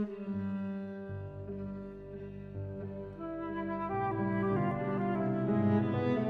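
Flute, viola and piano trio playing a slow passage of held notes, soft at first and growing louder from about four seconds in.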